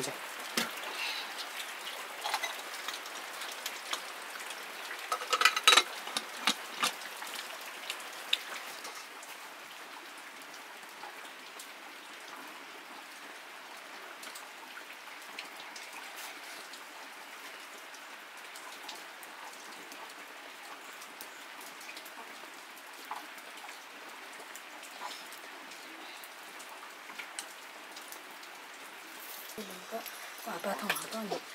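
Aluminium pot and lid knocking and clattering as they are handled on a clay wood-fire stove, loudest about five or six seconds in, over a steady soft hiss with scattered light ticks.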